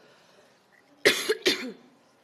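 Two short, loud coughs about a second in, half a second apart.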